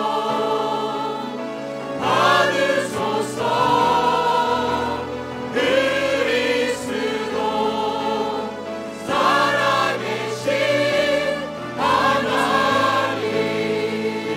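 A group of voices singing a Korean praise and worship song in Korean, with sustained instrumental accompaniment underneath. The song moves in long sung phrases of a few seconds each.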